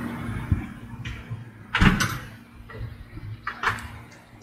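Handling noise around a glass soda bottle at a table, with a dull thump about two seconds in as the loudest sound. Near the end, soda starts pouring into a plastic cup.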